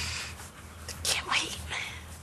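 Hushed, whispered speech between two people, with breathy bursts of voice, the clearest about a second in.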